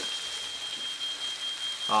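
A smoke alarm sounding one steady high-pitched tone, set off by smoke from pork chops pan-frying in an unventilated basement, over the sizzle of the frying pan.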